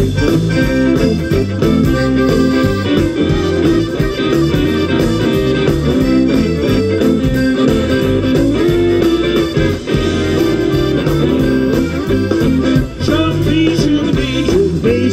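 A live Cajun band playing an up-tempo number on fiddle, accordion, electric guitar, bass and drums, with a steady drum beat.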